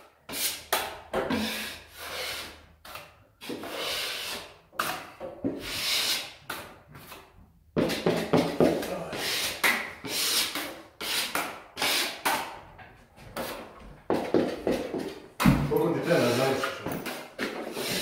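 Steel joint knife scraping along the edge of a plaster cornice, cleaning off cornice cement in many short, irregular strokes with brief pauses between them.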